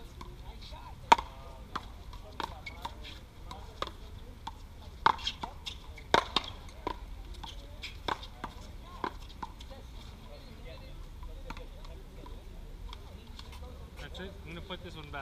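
One-wall paddleball rally: the ball struck by paddles and smacking off the wall, a series of sharp cracks at irregular intervals. The loudest crack comes about a second in, and the hits cluster between about five and seven seconds.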